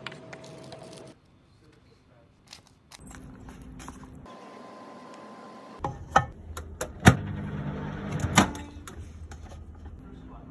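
Several sharp clicks and clunks from a countertop microwave oven with dial controls as a cup of instant noodles is put in and the door shut, with the oven's low electric hum for about a second and a half.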